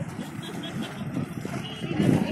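A small hatchback car passing close by at low speed on a paved road, its engine and tyres heard, with voices in the background.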